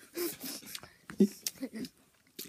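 Short, muffled vocal sounds from a boy with a mouthful of Big League Chew shredded bubble gum, with a few sharp clicks in between.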